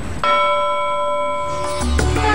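A single bell-like chime struck just after the start, ringing steadily for about a second and a half and then cutting off, followed near the end by music with a low beat: a TV news bulletin's segment-transition jingle.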